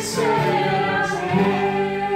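A group of voices singing a Portuguese gospel worship song together, with musical accompaniment.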